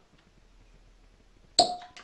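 Cork stopper pulled from a bottle of Caol Ila single malt whisky: a single sharp pop near the end, followed by a short ringing note.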